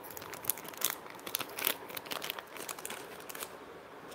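Plastic packaging pouches crinkling and rustling as they are handled, in short, irregular crackles.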